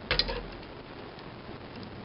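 A short clatter of clicks with a dull thump a moment in, as a pair of scissors is picked up, then faint light ticks of handling.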